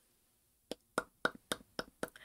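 About five faint, sharp mouth clicks and lip smacks, starting under a second in and coming roughly a quarter second apart.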